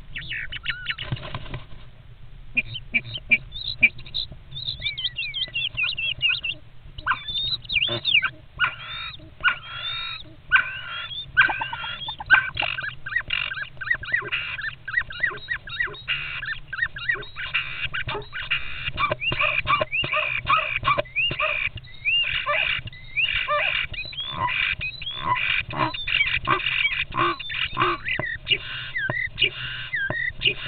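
Two European starlings fighting inside a wooden nest box: a dense run of squawks, whistles and gliding calls with scratching and scuffling on the nest material. The calls are sparse at first and grow busier from about halfway through.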